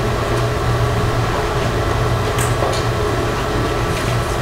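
Steady low hum over an even background hiss, the room tone of a meeting room, with a faint click about halfway through.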